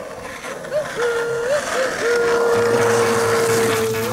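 A thin whistle-like tone that flicks upward a few times and then holds one steady pitch for nearly two seconds, over a steady hiss, with a low hum joining in the second half.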